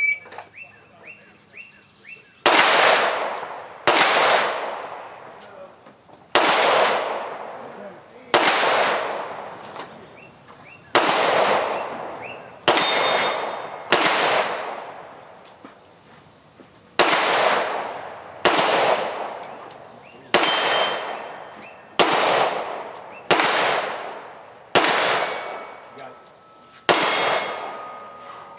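A Glock 17 Gen4 9mm pistol firing about fifteen shots, spaced roughly one to two seconds apart, each shot trailing off in a long echo. Several shots are followed by the ring of struck steel plates.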